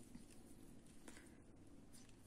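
Near silence: room tone with faint soft handling noise, a small tick about a second in, as needle and thread are worked by hand.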